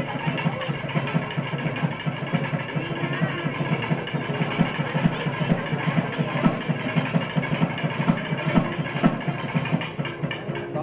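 Fast, continuous drumming with a steady higher drone held above it, the kind of ceremonial music played through a wedding rite.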